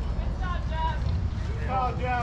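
Wind buffeting the microphone as a steady low rumble, with distant voices twice, about half a second in and again near the end.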